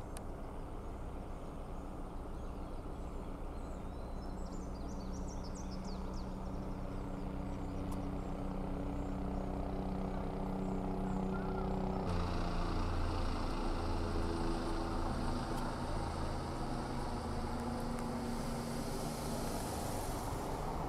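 Helicopter hovering overhead, a steady drone of rotor and engine that grows somewhat louder and shifts abruptly in pitch partway through. Birds chirp faintly a few seconds in.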